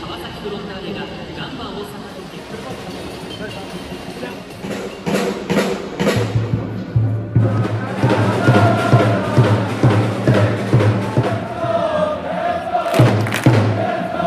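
Football supporters chanting in unison to a bass drum in the stands. The drum starts about six seconds in and the massed voices join a second or so later; before that only quieter crowd sound.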